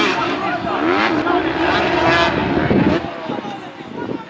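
Voices of players calling out across an outdoor football pitch over a steady low rumble.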